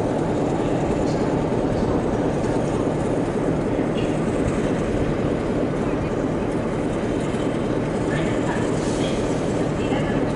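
Diesel multiple-unit passenger train approaching slowly over station points: a steady low engine and rail noise with no breaks.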